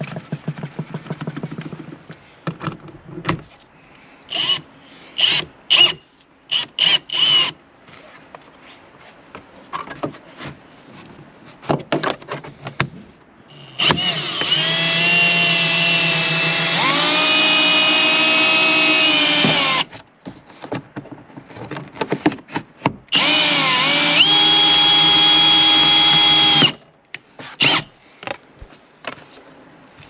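Cordless drill driving a windshield cut-out wire winder, pulling the cutting cord through the urethane. It runs in two long spells of about six and three and a half seconds, its motor whine shifting in pitch as it goes. Scattered clicks and knocks of handling come before.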